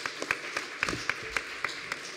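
Applause: many people clapping in a dense, steady run of hand claps.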